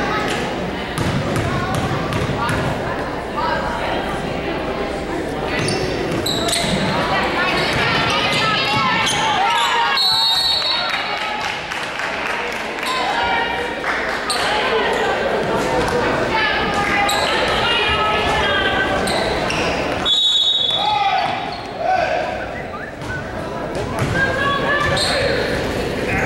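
Crowd and players talking and calling out, echoing in a large gym, with a basketball bouncing on the hardwood floor. Two short, high referee whistle blasts, about ten seconds in and about twenty seconds in.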